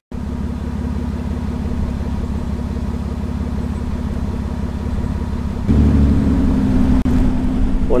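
A car driving: a steady low engine and road drone. It gets louder about six seconds in.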